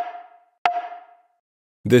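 Woodblock-style percussion sample made from a cassette player's switch click, struck twice about three quarters of a second apart. Each hit rings at one clear pitch, drawn out by a narrow EQ boost, with a short reverb tail that the compressor brings forward.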